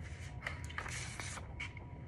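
Paper stationery sheets handled and shuffled, making several short, crisp rustles over a low steady background hum.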